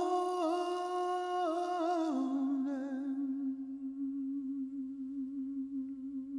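A solo voice humming wordlessly, holding long notes with small turns, then stepping down to a lower note about two seconds in and holding it with a slow wavering pitch.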